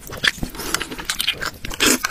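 Close-miked eating sounds: wet mouth smacks and chewing clicks, with a longer, louder slurp of hot and sour noodles and soup near the end.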